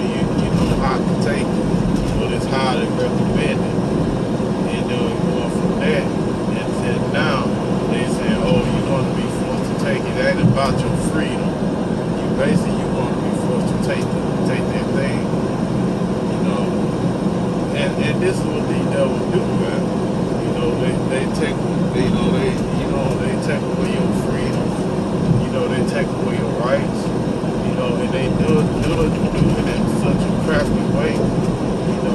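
Steady engine drone and road noise inside the cab of a truck cruising at highway speed.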